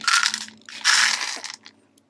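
A cat crunching dry kibble from its bowl, in two loud bursts of chewing, the second longer.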